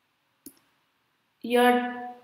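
A single short click about half a second in, against near silence.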